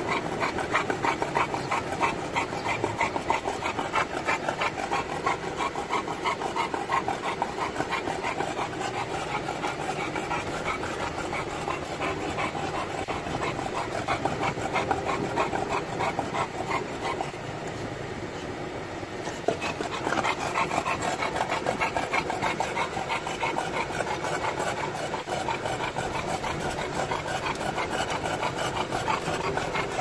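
Olde English Bulldog panting fast and steadily, a quick even rhythm of breaths that eases for a couple of seconds just past the middle; the dog is hot.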